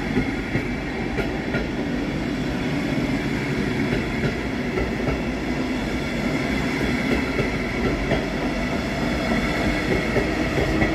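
Double-deck regional passenger train rolling past close by, a steady sound of wheels on rail with a few clicks from the wheels over the track. It grows a little louder near the end as the electric locomotive at the rear of the train comes up.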